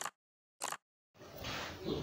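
Subscribe-button bell sound effect: short dings repeated about every two-thirds of a second, the last one about two-thirds of a second in. Faint room hiss follows from a little after a second in.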